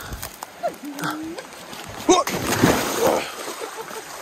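Shallow stream water splashing and sloshing as a person wades through it, loudest from about two seconds in, with a short vocal grunt or two.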